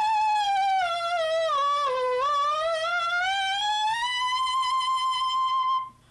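Clarinet mouthpiece played on its own: one sustained reedy tone that bends slowly down about an octave and back up again, then is held and stops just before the end. It is a pitch-bending flexibility exercise borrowed from brass players, done by moving the mouthpiece in and out of the mouth.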